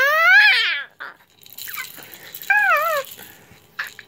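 A toddler's high-pitched squeals: a loud one of about a second with a wavering pitch, then a shorter wavering squeal about two and a half seconds in.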